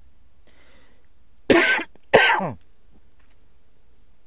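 A man coughs twice, about half a second apart, both loud and short.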